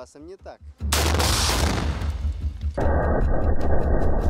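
Sudden loud blast about a second in from an RPG-7 shot with a PG-7VR tandem grenade, dying away over a second or two. Music then comes in.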